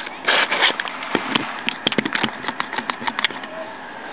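Handling noise from blue quick-grip bar clamps and a wooden hurley on a table: a short rustle or scrape near the start, then a run of irregular light clicks through the middle.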